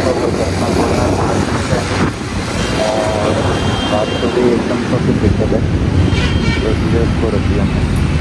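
Motorcycle engine running steadily under road traffic noise. A vehicle horn sounds for about a second and a half around three seconds in, and again briefly near six seconds.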